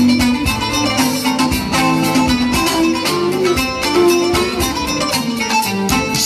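Live instrumental Cretan folk music: long-necked lutes (laouto) plucking and strumming a steady rhythm under a sustained bowed-string melody.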